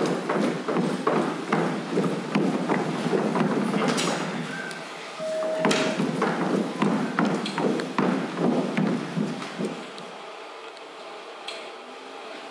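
Many feet stepping and shuffling on a stage floor, a dense run of quick overlapping knocks that stops about ten seconds in. A short steady beep sounds about five seconds in.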